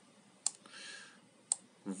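Two short, sharp clicks about a second apart, with a faint breathy hiss between them; a man's voice starts just at the end.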